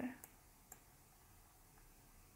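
A few faint single computer-mouse clicks, spaced apart, over quiet room tone.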